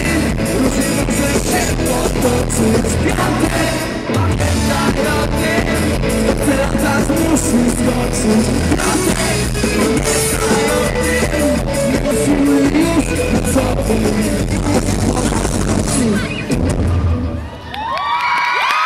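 Live pop-rock band playing loud through a PA, with electric guitar and a drum kit pounding steadily. The sound dips briefly near the end.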